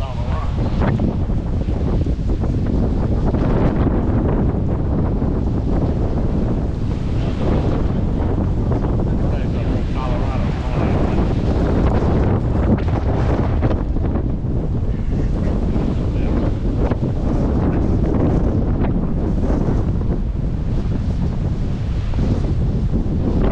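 Strong storm wind buffeting the microphone, a loud, steady rush heaviest in the low range, with heavy surf breaking on the rocky shore underneath.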